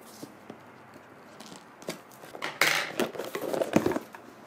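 A cardboard gift box being opened by hand. A few faint clicks come first, and from about halfway there is a run of scraping, rustling handling noise as the box is worked open and its lid lifted.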